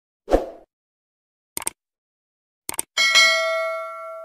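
Subscribe-button animation sound effects over total silence: a short soft thump, two quick clicks about a second apart, then a bright bell-like notification ding that rings out and fades.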